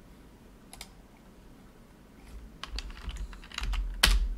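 Computer keyboard keystrokes: a single click about a second in, then a quick run of keystrokes in the second half.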